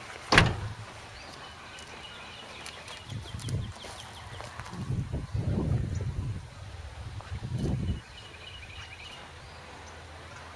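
A sharp knock on the camera about a third of a second in, then low rumbling swells of noise on the microphone between about three and eight seconds in, with faint bird chirps in the background.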